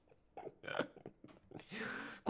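A man's quiet laughter: a few short, breathy chuckles, then a longer breath near the end.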